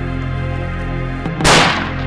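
A single rifle shot about one and a half seconds in, a sharp crack that dies away within a fraction of a second, over steady background music.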